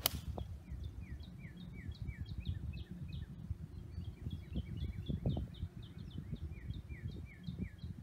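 A golf club strikes the ball off turf: one sharp click right at the start. After it, a bird chirps over and over in short falling notes, several a second, over a low steady rumble of wind on the microphone.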